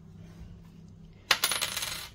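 A coin dropped onto a hard surface about a second and a half in, striking once and then ringing and rattling briefly before settling.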